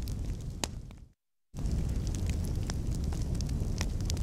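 A large building fire burning: a steady low rumble dotted with sharp crackles and pops. The sound fades and cuts out for a moment about a second in, then comes back the same.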